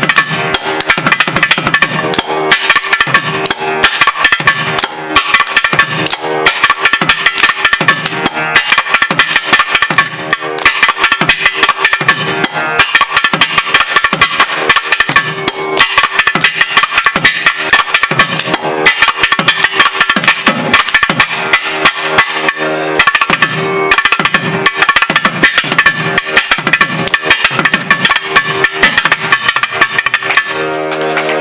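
Thavil, the South Indian barrel drum, played solo with capped fingers: rapid, dense rhythmic strokes throughout, over a steady drone.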